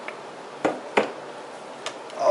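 Spatula knocking against a metal mixing bowl while stirring thick cheesecake batter by hand: two sharp knocks about a third of a second apart near the middle and a lighter one near the end, over a steady hiss.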